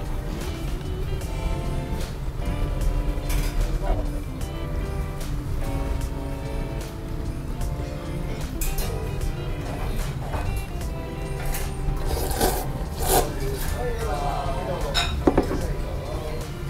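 Background music, with short eating sounds over it: noodles slurped from a bowl and a light clink of chopsticks on china a few times.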